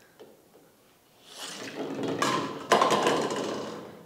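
A hollow plastic toy ball rolls along a wooden tabletop, building up over about a second, then knocks into plastic toy bowling pins. There are two sharp clatters about half a second apart, the second the loudest, and two pins are knocked down. The clatter rings briefly and fades.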